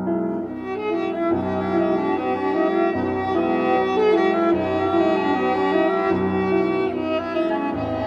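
Cello playing a bowed melody of sustained notes over piano accompaniment, a classical chamber piece for cello and piano.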